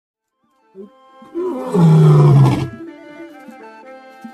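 A lion roaring over music. A short grunt comes first, and about a second and a half in a loud, deep roar lasts about a second. Held instrumental notes carry on after it.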